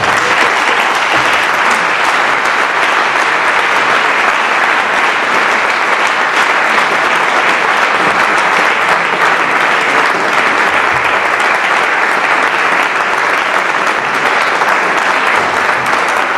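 Long, steady applause from a seated audience.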